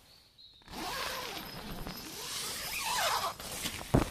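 A zipper drawn slowly along the tent's fabric, starting about a second in, its rasp sliding up and down in pitch as it goes. A sharp click comes at the very end.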